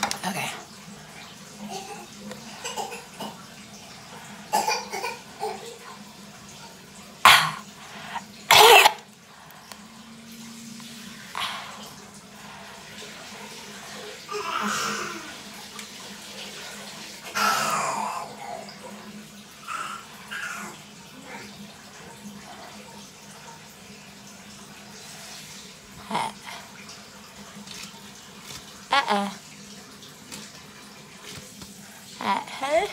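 Water running into a bathtub in the background, a steady hiss, with two loud sharp knocks about seven and nine seconds in.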